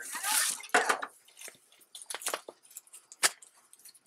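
Handling noises: a short rustle, then a few scattered sharp clicks and taps as the solar maintainer's cord and small plastic parts are moved about.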